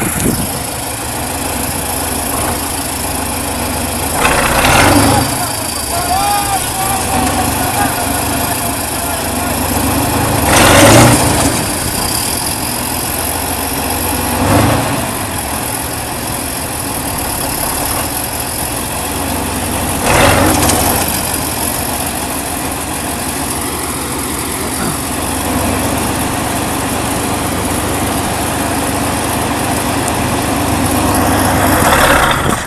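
Kirovets K-700 tractor's V8 diesel engine running steadily, with four brief louder surges of about a second each.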